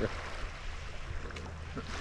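Steady wash of small lake waves on a pebbly beach, an even rushing noise with a low rumble beneath.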